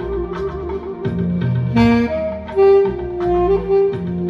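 Saxophone playing a slow melody of held notes that slide between pitches, over a backing track with a bass line and light percussion.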